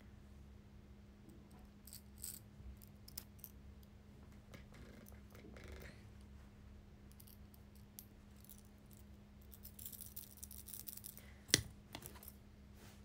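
Faint handling noise: scattered small clicks and rustles over a steady low hum, with one sharp click near the end that is the loudest sound.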